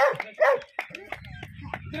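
A dog barking twice in quick succession at the start, short sharp barks, followed by a low rumbling noise with scattered clicks.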